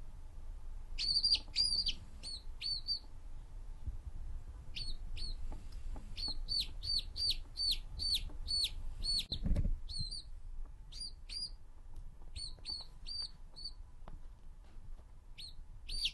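Quail calling in runs of short, high chirps, several a second, in bursts with short pauses. A brief low thump comes about nine and a half seconds in.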